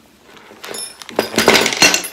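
Clear plastic bag crinkling and rustling as it is handled, starting about half a second in and getting louder in the second half.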